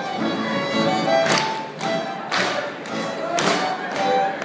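A live folk dance band with fiddle plays a lively dance tune. A sharp percussive hit lands about once a second, in time with the music.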